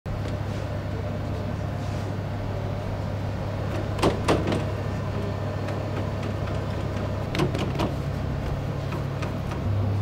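Baguette dough-moulding machine running with a steady low motor hum that shifts pitch twice in the latter half, with a few short clacks about four seconds in and again past seven seconds.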